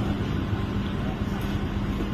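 Outdoor street ambience with people talking indistinctly over a steady low hum.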